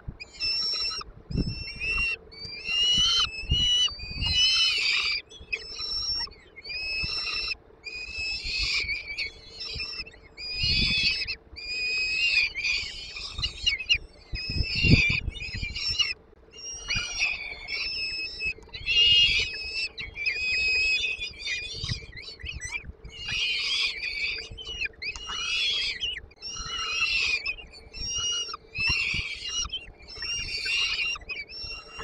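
Peregrine falcon chicks giving high begging calls over and over, one call straight after another, while being fed prey, with a few dull thumps from the feeding.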